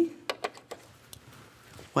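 A few short, sharp clicks in the first second, then faint room tone. They come from the fabric and the sewing machine being handled as the sewn piece is taken off the machine.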